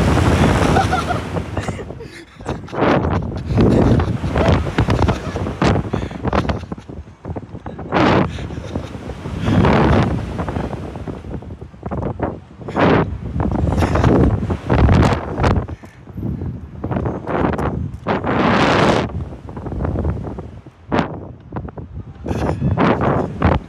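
Wind buffeting a ride-mounted microphone in repeated gusts, rising and falling every second or two, as the Slingshot reverse-bungee capsule flies and swings through the air.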